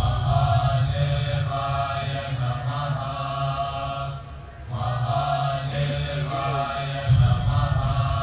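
Voices chanting a mantra over a steady low drone, with a brief lull about four and a half seconds in and a louder phrase starting near the end.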